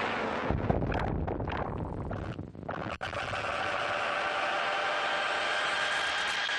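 Electronic song intro. For the first three seconds there is dense, crackling distorted noise that breaks up and drops out. After that a held chord of high synthesizer tones sits over a hissing noise bed.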